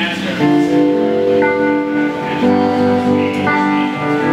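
Live band music led by a strummed acoustic guitar, held chords changing about once a second.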